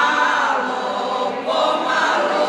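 An amateur pensioners' choir of older women and men singing together in unison, holding long notes; one phrase ends and the next begins about a second and a half in.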